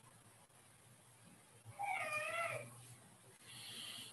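A cat meowing once, a single call just under a second long about halfway through.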